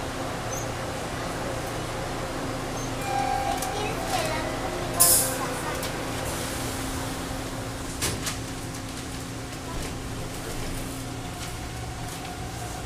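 Inside a subway car at a station stop: a steady low hum from the car's equipment under the chatter of passengers, with a short, loud hiss of air about five seconds in and a few sharp clicks a few seconds later, as the train gets ready to leave the station.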